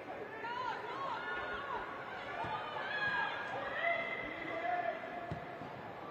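Players' shouts and calls across the pitch, carrying in a near-empty stadium, with a few short thuds of the ball being struck.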